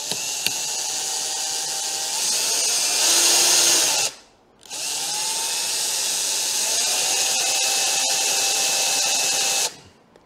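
Cordless drill running in two long runs with a brief stop about four seconds in, its bit boring into a broken-off steel drill bit jammed in the mirror-mount thread of a motorcycle's front brake fluid reservoir. It is drill bit grinding against drill bit, which is never going to cut through.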